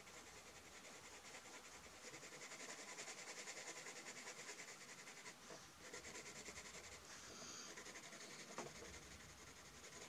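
Faint scratching of a colored pencil shading on textured paper in quick, repeated short strokes.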